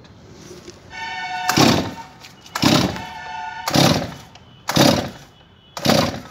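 Stihl MS 250 chainsaw's recoil starter cord being pulled five times, about once a second, each pull a short rasping burst; the engine does not catch.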